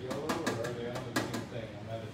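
A stiff paintbrush dabbing paint onto a metal mailbox, giving a few sharp taps, under a low, indistinct voice.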